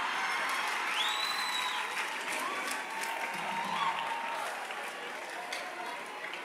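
Congregation applauding, swelling in quickly at the start and slowly dying away in the last couple of seconds, with a few high drawn-out calls from the crowd over it.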